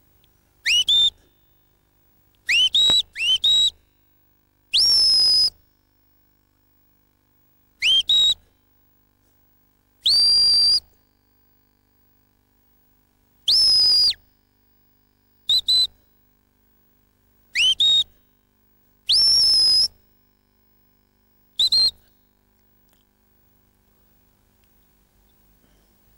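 Sheepdog handler's whistled commands to a working dog: about ten high-pitched signals a few seconds apart, some short rising chirps in quick pairs and threes, others longer held notes.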